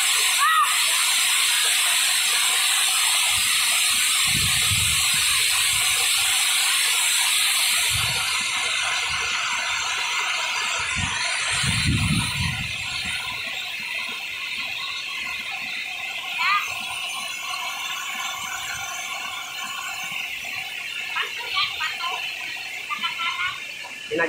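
Waterfall plunging into a pool: a steady loud rush of falling water, which turns duller about a third of the way in. Two brief low rumbles come through, and faint voices can be heard in the second half.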